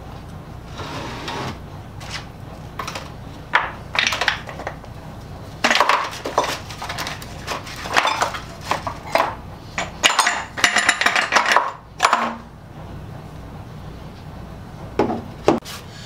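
Small vinegar-soaked metal saw-handle parts tipped out of a PVC soaking tube into a plastic tray, clattering and knocking in a string of irregular bursts. A steady low hum runs underneath.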